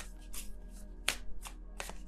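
A tarot deck being shuffled by hand: a few short, sharp card snaps and flicks, with soft background music.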